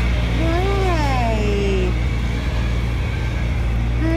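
A steady low rumble with one long, drawn-out vocal sound over it that rises and then falls in pitch.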